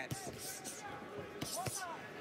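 Arena crowd noise with scattered voices calling out, and a few thuds of boxing-glove punches landing during a close-range exchange.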